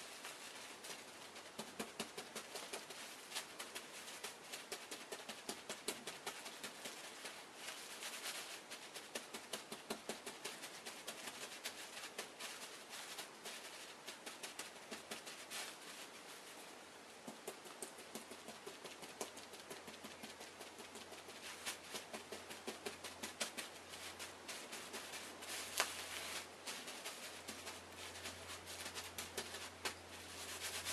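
Hands patting and squeezing a soaking-wet, soapy wool felt heart in the wet-felting process: a faint, rapid run of soft wet pats and squelches.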